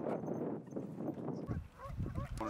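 Wind buffeting the microphone on open water, cut off abruptly about one and a half seconds in, followed by a few short honking calls.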